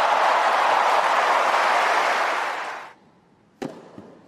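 Tennis crowd applauding and cheering after a point won, dying away after about three seconds. Near the end, a single sharp crack of a racket striking the ball as the next point begins.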